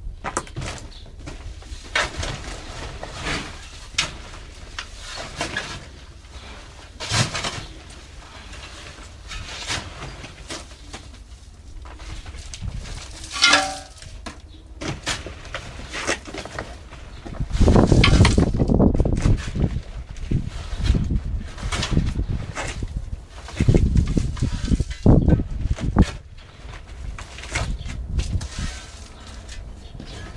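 A small hand shovel digging soil out of a woven bulk bag and tipping it into terracotta pots: irregular scrapes, rustles and knocks, with two louder stretches of handling noise in the second half.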